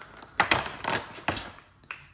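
Perforated cardboard door of an advent calendar being pressed and pried open: a quick series of sharp cardboard clicks and crackles about half a second to a second and a half in.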